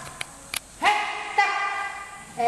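Young giant panda bleating: two drawn-out, high, horn-like calls, the first starting a little under a second in and the second following straight on, after two faint clicks.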